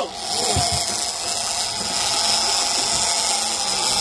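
Fishing reel's clicker buzzing steadily as line pays out: a big mako shark running with the bait.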